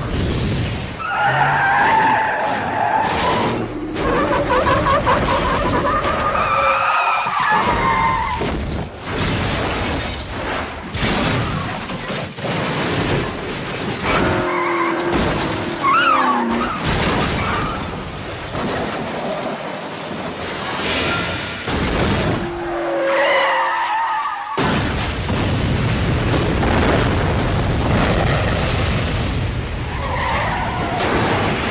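Action-film sound mix of a highway crash: a car skidding with squealing tyres, crashing and shattering glass, and fiery explosions, with music underneath. A loud, sustained explosion fills the last few seconds.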